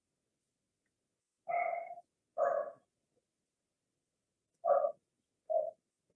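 A dog barking: four short barks in two pairs.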